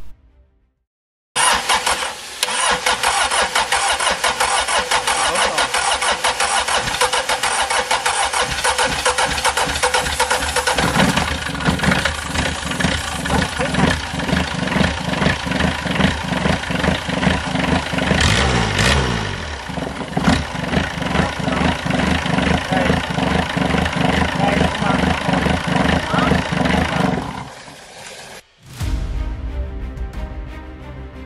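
Small marine diesel engine, out of the boat on a test stand, starting abruptly about a second and a half in and running with a rapid, even knock, its pitch shifting about two-thirds of the way through before it is shut off a couple of seconds before the end. It runs without cooling water reaching it, because its raw-water pump impeller is broken.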